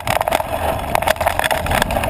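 Mountain bike clattering and rattling over a rough dirt trail on a fast descent, with a steady rush of tyre and riding noise.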